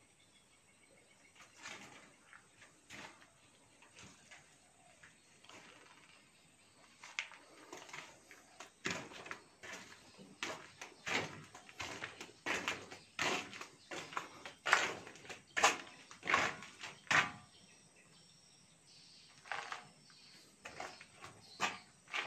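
Irregular footsteps and scuffs on a bare concrete floor, a run of about ten seconds that starts some seven seconds in after a mostly quiet start.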